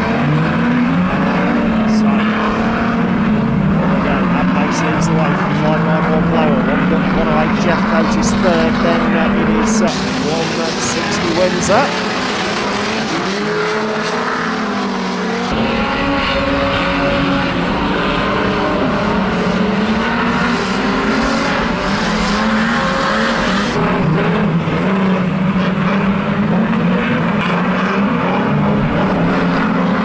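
Engines of a pack of old pre-1975 saloon banger-racing cars running and revving as they race round the track. Several engine notes overlap and rise and fall, and the sound shifts suddenly a few times.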